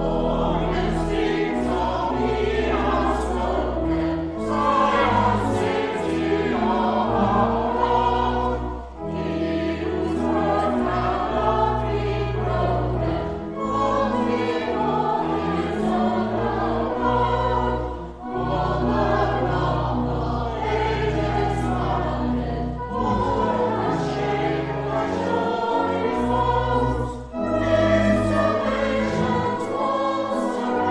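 Church choir singing in parts over held low organ notes, the phrases broken by short pauses for breath.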